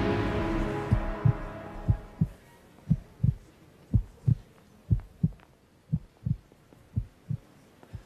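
Music fading out over the first two seconds, then a heartbeat sound effect: low double thumps, lub-dub, about once a second.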